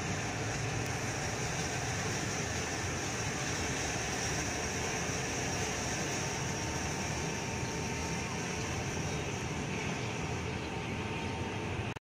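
Steady city background noise: a constant traffic hum with a high, even hiss over it, with no distinct events.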